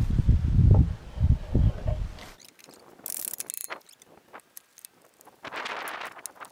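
Wind rumbling on the microphone for about two seconds, then cutting off sharply. After that come scattered sharp clicks and a brief scrape near the end as a glued wooden ledger board is handled against the steel trailer frame.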